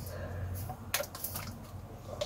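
Someone drinking from a plastic water bottle: quiet swallowing sounds, with one short crackle of the thin plastic about a second in.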